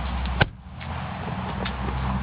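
A car door, the 2009 Subaru Impreza's, shut with a single sharp thunk about half a second in, over a steady low hum.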